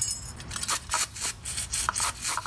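Scraping and clicking of metal on metal as brake pad retaining clips are worked into a rusty caliper bracket: a run of short, sharp strokes, most of them in the second half.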